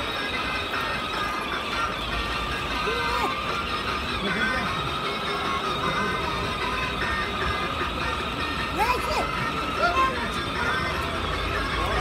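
Music playing from the built-in speaker of a children's battery ride-on toy car, over street rumble and occasional voices.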